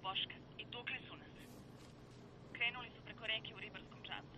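A person's voice heard over a telephone line, thin and narrow, in short phrases with pauses, over a faint steady low hum.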